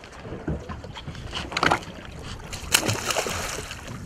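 Sea water sloshing and splashing against the side of a small boat, with a few short knocks and two louder splashes, the second and loudest about three seconds in.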